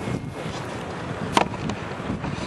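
Wind buffeting the microphone, with one sharp knock about one and a half seconds in.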